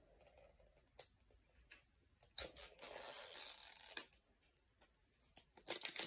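Hismile toothpaste packaging being unboxed: a few faint clicks, a sharp snap about two seconds in, then about a second and a half of rustling, with more clicks near the end.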